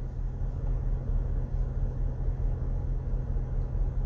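Car engine idling, heard from inside the cabin as a steady low rumble.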